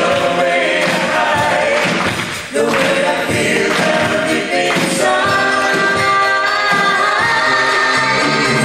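Live Christian band performing a song: singing over drums and keyboard, with a brief break between phrases about two and a half seconds in.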